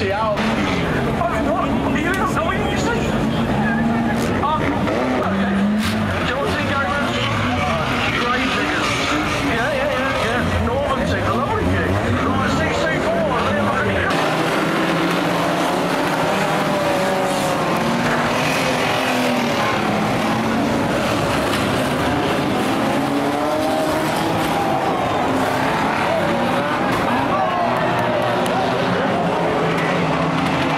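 Several banger race cars' engines revving and running hard around a dirt oval, pitch rising and falling as they accelerate and slide, with tyres skidding on the shale, under indistinct voices. About halfway through, the deep low rumble drops away and the engine sound becomes thinner.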